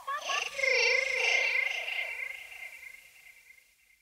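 The closing sound of a homemade electronic track: a warbling, wavering sound with a steady high ring swells in, then fades out over about three seconds into silence.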